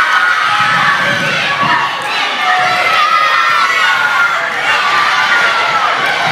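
A crowd of schoolchildren shouting and cheering on runners, many high voices overlapping in a steady din, echoing in a sports hall.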